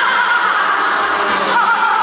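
Loud amplified gospel music, with a woman's singing voice carried over the PA system, wavering and held high.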